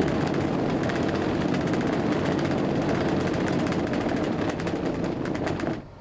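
Shelbourne Powermix Pro Express diet feeder's slatted discharge conveyor belt running: a steady mechanical noise with a fast, even rattle, which drops away just before the end.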